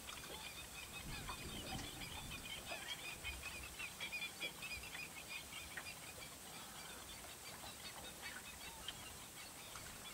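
Many small, high bird chirps in a dense, irregular chatter that thins out after about five seconds, with a low rumble in the first couple of seconds.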